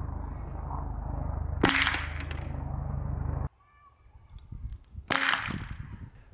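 Vacuum cannon firing: a single sharp pop about one and a half seconds in as the packing-tape seal over the tube bursts, over a steady low hum that cuts off suddenly. A second, shorter burst of noise follows about five seconds in.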